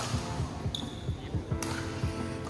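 Badminton racket hitting the shuttlecock in a rally: a sharp smack about one and a half seconds in, with the tail of a hit just before. A brief high-pitched squeak comes near the middle, over background music.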